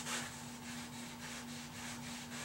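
A cotton rag rubbed back and forth over a wood floor as wood stain is wiped in, in quick, faint strokes about four a second, over a steady low hum.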